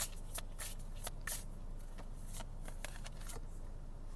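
A tarot deck being shuffled by hand: a quick run of soft card snaps and flicks that thins out and stops a little before the end.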